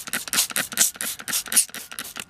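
Plastic trigger spray bottle squirted over and over in quick succession, a rapid run of short hissing sprays about six a second.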